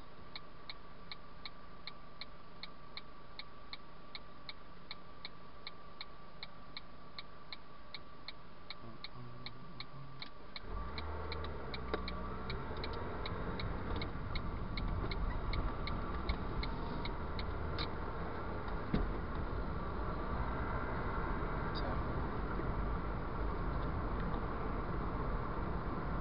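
Car turn-signal relay ticking steadily about twice a second in a Ford Fiesta Mk6 cabin while the car sits idling. About ten seconds in the engine and road noise rise as the car pulls away. The ticking stops a few seconds later.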